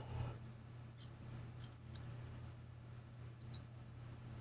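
A few faint computer mouse clicks over quiet room tone with a steady low hum: one about a second in, a couple just before the middle, and a close pair near the end.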